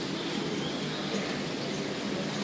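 Steady barn ambience of dairy cows feeding at a feed barrier: an even, continuous noise with no distinct knocks or calls.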